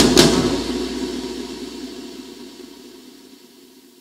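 The end of a pagode track: a last percussion hit right at the start, then the music's sustained tail fading steadily away to near silence over about four seconds.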